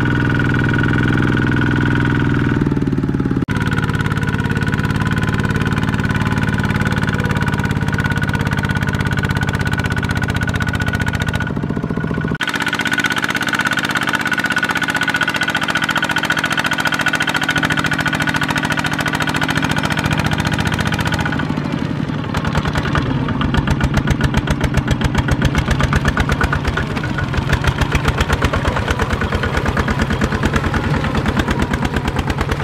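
Single-cylinder diesel engine of a Kubota ZT155 two-wheel power tiller running under load as it hauls a loaded trailer through mud. The sound changes abruptly a few times, and in the last part the engine's beat turns into a strong, rapid, even chugging.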